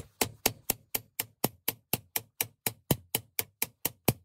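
Hammer tapping a steel drift braced against the notched ball ring of a rusty Sturmey-Archer AG hub shell, to drive the ring round and unscrew it. The metal knocks come steadily, about four a second.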